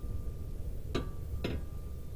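Two short, sharp clicks about half a second apart, over a steady low rumble and a faint thin steady tone.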